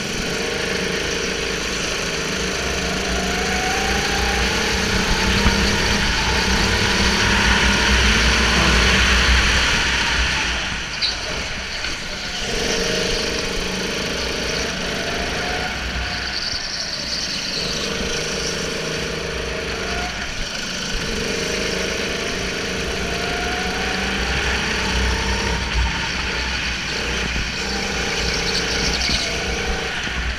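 Racing kart's petrol engine (Sodi RT8, single-cylinder four-stroke) heard onboard at racing speed, its pitch rising slowly along each straight and dropping into the corners several times over. Other karts' engines run close by.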